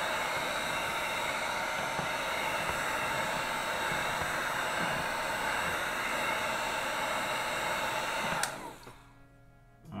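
Handheld heat gun blowing steadily, a rush of air with a steady motor whine, played over wet acrylic pour paint to heat the silicone so cells rise to the surface. It cuts off abruptly about eight and a half seconds in.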